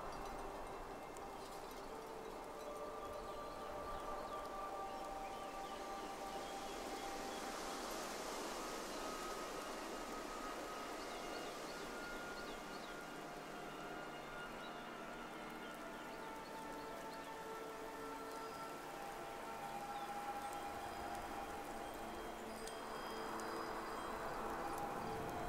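Soft ambient music of long, slowly changing chime-like tones over a steady bed of night wind. A brighter hiss swells and fades about a third of the way in.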